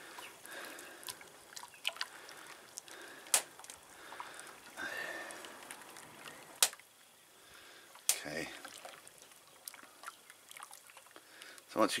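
A wooden spoon stirring watery sodium silicate solution in a glass bowl: faint liquid sloshing and dripping, with a few sharp clicks scattered through it.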